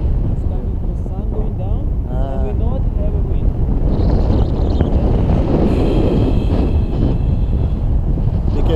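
Wind rushing over the camera microphone of a paraglider in flight: a steady low rumble of buffeting air. A voice is heard briefly about two seconds in.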